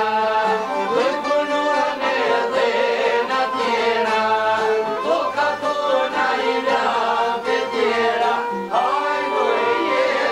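Traditional Albanian folk song: a man sings over two plucked long-necked lutes, a large sharki and a smaller çifteli. The voice comes in and out in phrases over the steady strumming.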